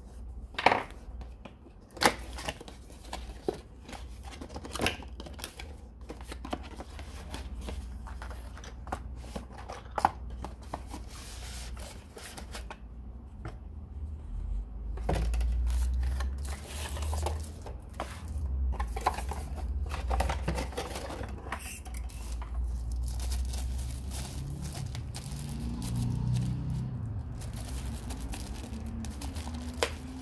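Cardboard product box being opened by hand and its tissue-paper wrapping pulled out: scattered sharp taps and knocks of the box and a craft knife on the desk, mostly in the first ten seconds, then steadier rustling and crinkling of paper.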